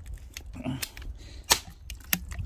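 Ratcheting pipe cutter biting into a plastic water-purifier filter cartridge: a few separate sharp clicks and cracks as the handles are squeezed, the loudest about one and a half seconds in.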